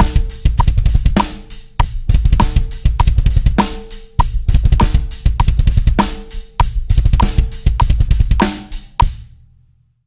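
Drum kit playing a groove with fast, broken double bass drum patterns under regular cymbal and snare strokes, at about one hundred beats a minute. The playing stops about nine seconds in and the last strokes ring out.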